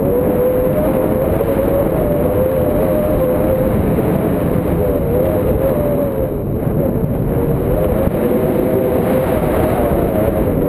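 Loud, steady wind rush and buffeting on a pole-mounted camera's microphone in paraglider flight, with a wavering whistle-like tone running through it.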